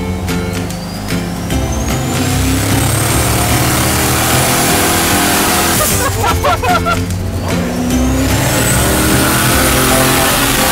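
Turbocharged 440 big-block engine in a Dodge truck accelerating hard, heard from the cab: a high whine climbs steadily in pitch for about six seconds, breaks off briefly at a gear change, then climbs again. Background music runs underneath.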